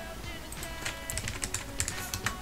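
Computer keyboard keys clicking in a quick irregular run, typing a value, over quiet background music.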